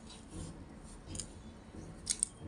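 Fingers pinching and pressing damp river sand into a small mound on a wooden board: faint gritty scraping, with soft scrapes about half a second and a second in.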